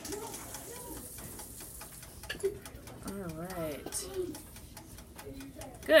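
Faint voices murmuring in the background, with scattered light clicks.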